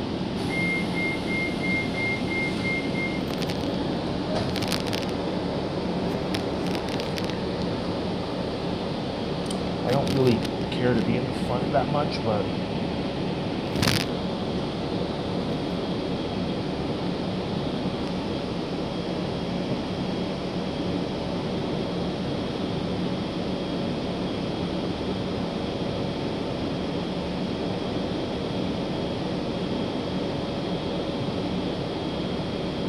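Steady engine and road noise inside a 2018 Gillig Low Floor transit bus under way. A rapid series of high beeps sounds in the first few seconds, and a single sharp click comes about 14 seconds in.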